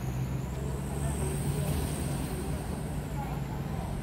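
A motor vehicle's engine running steadily, with faint voices in the background.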